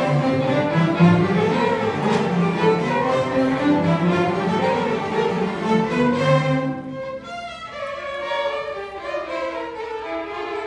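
Chamber string orchestra playing, with violins and cellos bowing. About two-thirds of the way in the music drops to a quieter, thinner passage.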